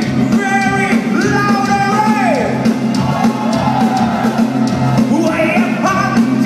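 Live power metal band playing, with a male lead vocal singing long held notes over a sustained keyboard and bass chord; the voice slides down about two seconds in.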